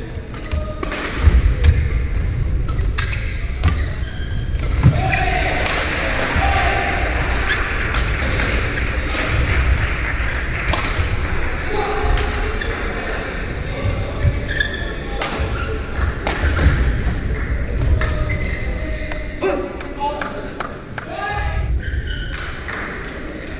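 Badminton rally: racket strings striking the shuttlecock again and again as sharp clicks, with players' footsteps thudding and short shoe squeaks on the court.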